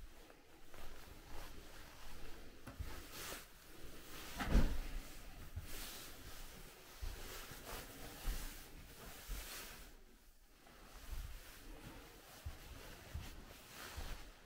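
Scattered quiet knocks, thumps and shuffles of a person moving about a small room. One louder knock comes about four and a half seconds in.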